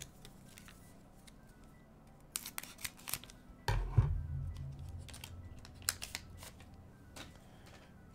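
Foil trading-card booster pack being torn open and its cards handled: sharp crinkling and tearing a couple of seconds in, a knock near the middle, then soft rustling of cards.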